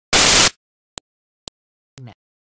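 A loud burst of static hiss, about half a second long, then two brief clicks about half a second apart, with dead digital silence between them.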